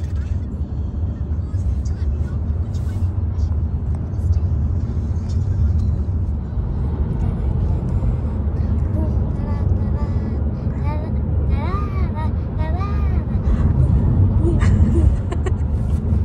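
Steady low rumble of road and engine noise inside a car's cabin at motorway speed. From about nine seconds in, a voice comes and goes over it.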